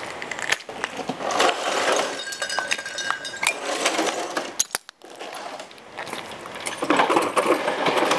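Broken beer-bottle glass crunching and clinking under people's feet, in uneven bursts, with a brief break about halfway.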